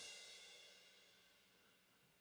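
A sampled cymbal from a Groove Agent SE drum kit rings out and fades away within about a second, followed by near silence.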